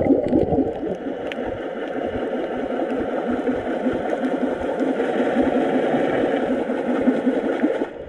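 Steady muffled rushing of water, recorded underwater through the camera's waterproof housing, with the sound pressed down into a low dull band.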